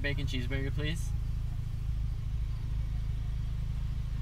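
Car engine idling with a steady low rumble, heard from inside the cabin; a voice speaks briefly in the first second.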